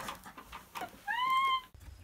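A short, high-pitched mewing cry that rises briefly and is held for about half a second, then cuts off abruptly. A low steady hum follows.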